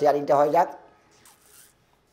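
A man's voice for the first half second or so, then a brief faint rustle.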